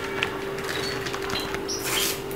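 A small paper sachet of leavening being handled and torn open, with a short crisp rip near the end, over a steady low hum.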